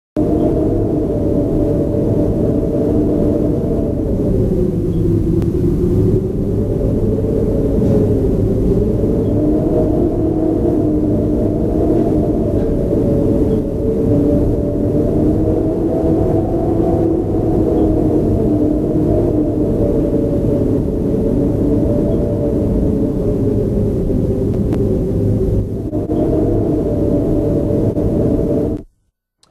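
A loud, sustained drone of several stacked tones, wavering slowly up and down in pitch over a low rumble, with a dip about four to six seconds in.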